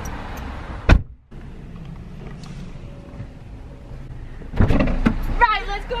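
A single sharp thump about a second in, then a low steady background. From about four and a half seconds, the car's driver's door opens and a person climbs into the seat.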